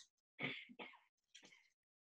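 A person faintly clearing their throat over a video-call connection, in two or three short, quiet sounds.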